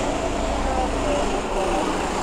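Go-kart engines running at a distance on an indoor track in a concrete underground car park, a steady mechanical drone with faint voices over it.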